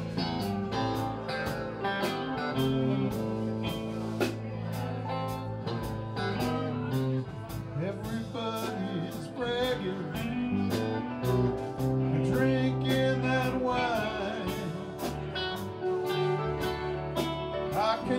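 Live band playing an instrumental passage: guitars, bass and keyboard over a steady drum beat.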